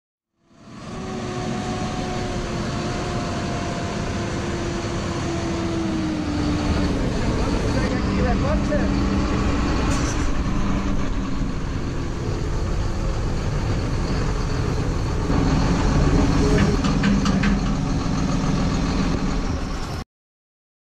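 A John Deere tractor's diesel engine running steadily, its pitch easing down about six seconds in, with a few short clicks later on.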